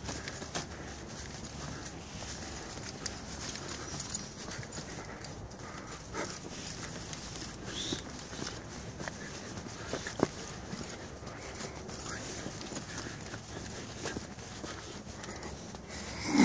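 Footsteps of a person walking on a dirt woodland trail, a steady run of footfalls with a few sharper knocks about six and ten seconds in.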